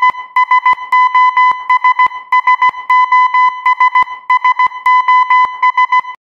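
Electronic beeping: a steady high-pitched beep chopped into quick short and longer pulses in an uneven, Morse-like pattern, each pulse starting with a click. It is loud and cuts off suddenly at the end.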